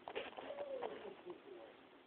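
A small child's wordless babbling, its pitch rising and falling, with a few light knocks near the start.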